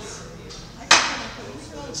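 A utensil strikes a plate once about a second in: a single sharp clack that is the loudest sound, over background chatter.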